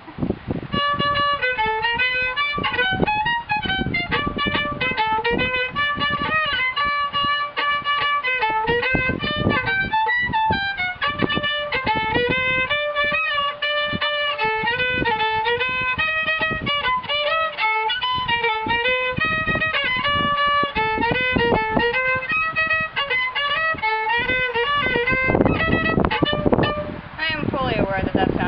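Solo violin playing a brisk, fast-moving melody, one note after another with no slow held passages. It stops about 25 seconds in, and a voice follows.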